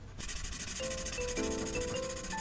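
Marker tip scrubbing rapidly back and forth on paper, colouring in a shape. It starts suddenly just after the beginning, over soft background music with a plucked melody.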